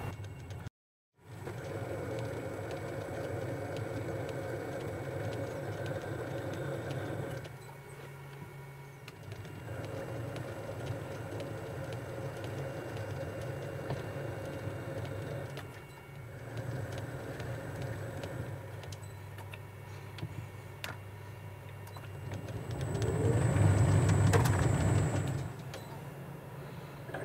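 Metal lathe running while single-point screw-cutting a 12 TPI BSW thread, a steady machine hum with a gear whine from the change-gear train that converts the metric lathe to cut imperial threads. It drops out completely for a moment about a second in, runs in spells with quieter stretches between passes, and grows louder near the end.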